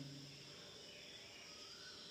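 Near silence: room tone with a faint, steady high-pitched hum.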